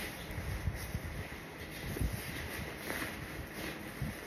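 Cloth rustling with low, uneven bumps and rumble as a jacket is pulled on over the shoulders.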